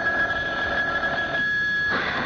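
A telephone bell ringing: one long, steady ring that stops near the end.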